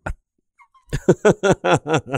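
A man laughing hard: after a brief pause, a quick run of loud 'ha's, about five a second, starts about a second in.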